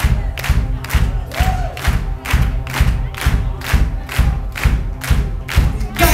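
Live band's steady drum beat, about two hits a second, with the audience singing and shouting along to the chorus.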